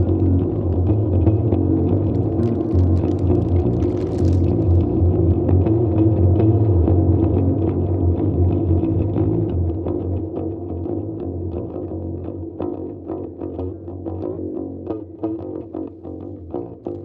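Experimental free-improvised music for laptop electronics and guitar: a steady low drone under short plucked guitar notes. The whole grows quieter in the second half, leaving the plucks more exposed.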